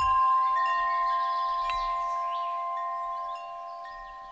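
Chimes struck and left ringing: several clear, steady tones that slowly fade, with another tone added about half a second in and one more near the end.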